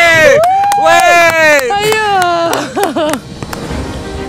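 A woman screaming in fright on a canyon swing: three or four long, high screams that rise and fall, stopping about three seconds in.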